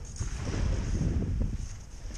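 Wind buffeting the camera microphone, an uneven low rumble.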